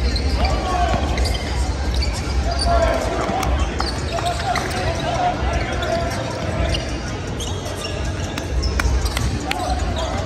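Several basketballs bouncing on a hardwood gym floor, irregular knocks echoing in a large gym, with people's voices underneath.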